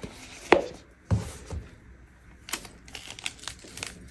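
Thin clear plastic protective sleeve crinkling in short crackles as it is pulled off a sunglasses temple, after a sharp click about half a second in and a knock just after a second as the case is handled.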